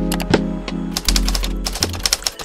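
Typewriter key clacks as a sound effect, a few at first, then a rapid run from about a second in, over background music.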